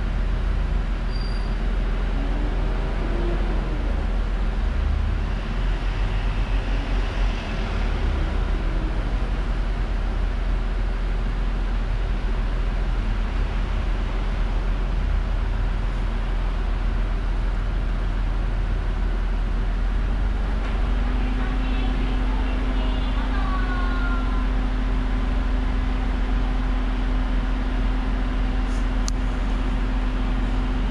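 Idling car engine heard from inside the cabin: a steady low rumble, with a steady hum joining about two-thirds of the way through.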